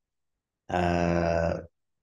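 A man's drawn-out vocal hum, held at one steady pitch for about a second and starting partway in.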